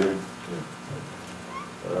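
Speech trailing off into a lull of about a second and a half, with only quiet room tone and a faint low voice sound. A man's voice starts again near the end.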